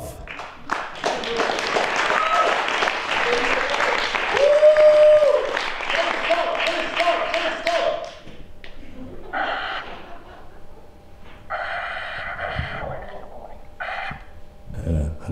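Theatre audience applauding and cheering, with a few held whoops, for about eight seconds before the applause dies away.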